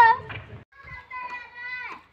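A child's voice. A high call is held for about a second, then drops in pitch at the end.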